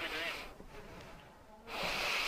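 Faint background voices and shop room noise, with a soft breathy hiss near the end.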